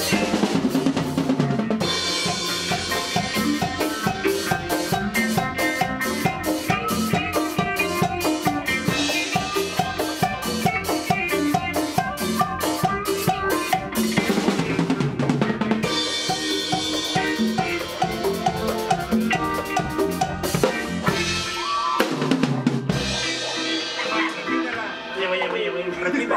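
A live band playing an instrumental passage: drum kit and hand drums keep a steady, fast beat under electric bass, electric guitar and keyboards. Near the end the bass drops out for a moment.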